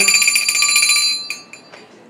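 A bell ringing in a fast continuous trill, high and bright, that stops about a second in.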